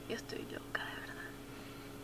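A woman whispering faintly for about the first second, with a hissy breathy sound, then only a steady low hum.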